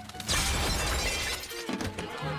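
A sudden loud crash with a shattering, breaking sound and a low rumble, lasting about a second. Music comes in near the end.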